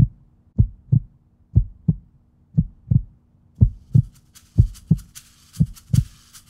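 Heartbeat-like pulse in a soundtrack: low double thumps repeating about once a second over a faint steady hum. A fast, high rattling hiss like a shaker joins about four seconds in.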